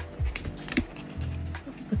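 Lo-fi hip-hop background music, with light taps and clicks as a cardboard album digipack and a photocard are handled.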